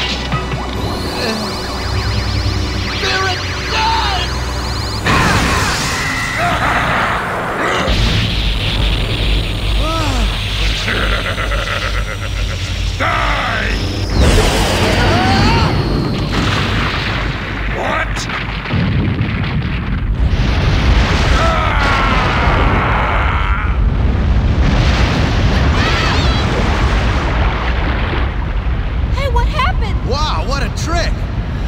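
Cartoon battle soundtrack: dramatic music under a continuous low rumble, with several heavy booms and blasts and shouts and grunts of effort.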